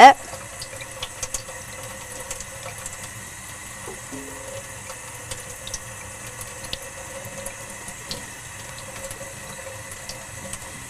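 A kitchen faucet running a thin stream of water onto a sheet of poster board held in a stainless steel sink: a steady splashing with scattered small ticks.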